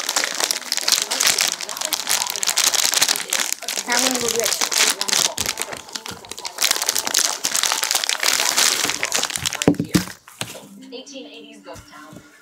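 Clear plastic bag crinkling and rustling as it is handled and shaken to empty kinetic sand out of it. The crackle goes on for about ten seconds, then drops away near the end.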